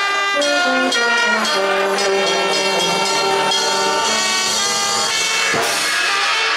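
Marching band brass section (trumpets, trombones, saxophones and low brass) playing a concert piece: held chords over a low line that moves in the first second or so, then settles into long notes. A sharp percussion hit sounds near the end.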